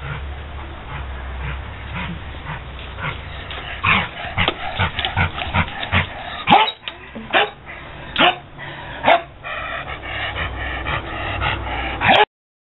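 A dog giving a quick series of short, loud barks during ball play, starting about four seconds in and keeping on to the end, with a steady low rumble underneath.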